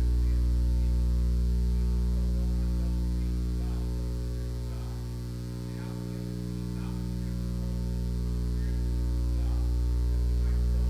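Steady electrical mains hum from the sound system, dipping in level for a moment about five seconds in and then coming back. A faint, distant voice can be made out underneath.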